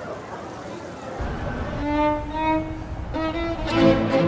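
Violins playing classical music. After a second of faint background noise, slow held bowed notes come in about two seconds in, and a fuller string passage swells up near the end.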